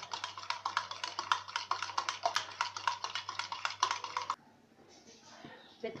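A spoon beating egg mixture in a steel tumbler: fast, even clinks of metal on metal, about seven a second, stopping suddenly about four seconds in.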